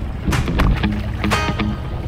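Background music with short bass notes and a few sharp percussive hits.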